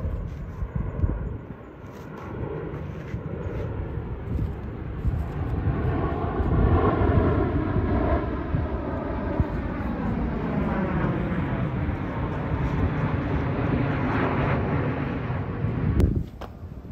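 Aircraft passing overhead: its engine noise swells over several seconds, is loudest about halfway through, and its pitch slides slowly down as it goes past.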